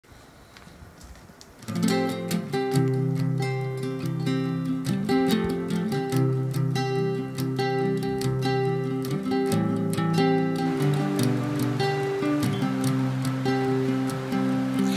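Acoustic guitar strumming chords in a song's instrumental opening, starting about two seconds in after a faint hush.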